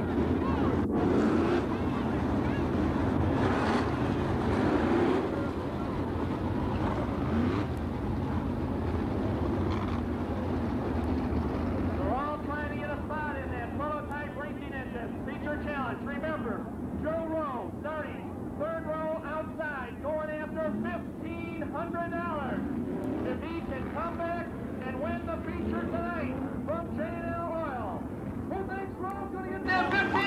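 A pack of winged sprint car engines running on the track, a steady rumble at first. From about midway they turn into repeated short throttle blips that rise and fall in pitch as the cars roll around together.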